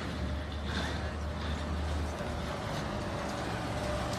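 City street traffic noise, with a low engine rumble that drops away a little over two seconds in.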